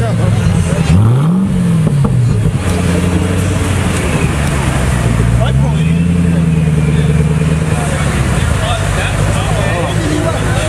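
Hennessey Ford GT700's supercharged V8 moving at low speed. It gives a quick blip of revs about a second in, settles to a lower note, then rises again for a couple of seconds before dropping back near the end.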